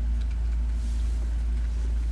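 A steady low rumble of background noise with a faint hiss, unchanging and without distinct events.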